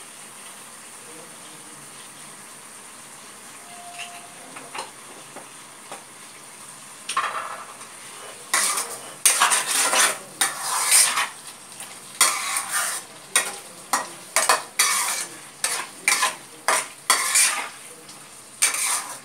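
Spatula stirring and scraping chicken gravy in a kadai, in a run of quick irregular strokes from about seven seconds in. Before that, the food gives a faint steady sizzle in the pan.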